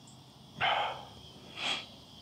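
Crickets chirring steadily at dusk, broken by two short noisy bursts about a second apart, the second higher-pitched than the first.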